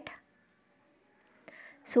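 Speech only: a spoken word trailing off at the start, a pause of about a second and a half with faint room noise, then talking resuming near the end.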